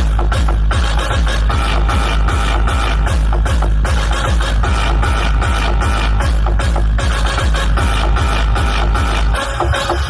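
Loud electronic dance music played through a large truck-mounted DJ speaker rig, with a heavy, steady bass and a regular beat.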